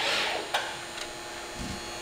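RAS Flexibend CNC sheet-metal folder clamping the sheet: a brief rushing hiss at the start, a sharp click about half a second in and a fainter one after, then a short low thud near the end, over a steady machine hum.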